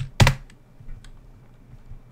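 Computer keyboard keystrokes: one sharp, loud key press about a quarter second in, then a few faint taps.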